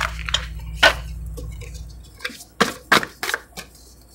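Tarot cards handled and set down on a marble tabletop: a scatter of sharp, irregular taps and clicks, with the loudest near a second in and near three seconds in.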